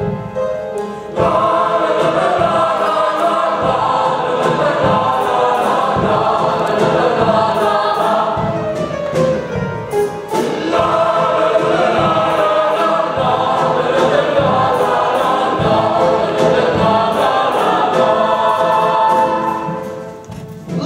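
Show choir singing in full harmony over instrumental accompaniment with a steady beat. The voices swell in about a second in, ease briefly around the middle and fall away near the end.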